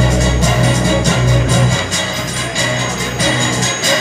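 Music playing with a regular beat; a strong low note holds through the first half and fades about two seconds in.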